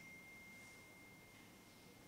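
Near-silent room tone with one faint, pure, high ringing tone that starts suddenly and slowly fades out over about three seconds.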